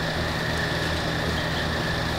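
A steady low mechanical hum, like an idling engine, with a faint steady high-pitched tone above it.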